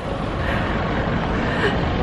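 Steady outdoor background noise: a low rumble with a fainter hiss above it.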